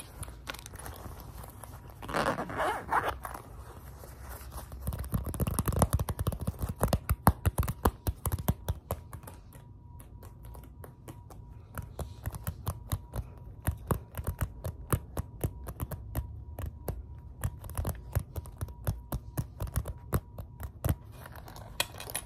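Fingertips tapping and scratching quickly on a grey fabric-covered hard case close to the microphone, with rubbing and scraping on its surface early on. From about seven seconds in, it becomes a long run of rapid sharp taps.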